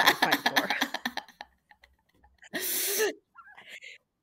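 A woman laughing in quick, breathy pulses for about a second, then after a short pause a single short, breathy burst.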